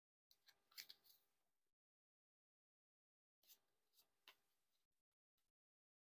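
Faint clicks and slaps of a Theory11 Red Monarchs playing-card deck being cut in packets between the hands, in two short bursts: one just after the start and one about three and a half seconds in.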